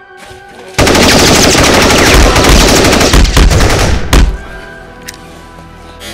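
Burst of automatic gunfire: rapid shots run together for about three and a half seconds and stop with one last sharp shot. Background music plays underneath.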